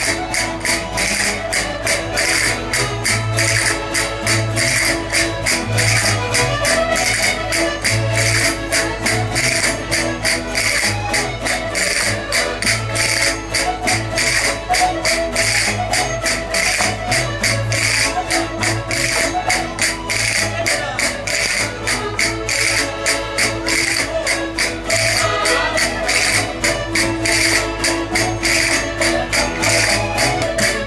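Live Portuguese folk dance music (Minho rancho style) played on accordions with guitar, driven by a fast, steady percussive beat.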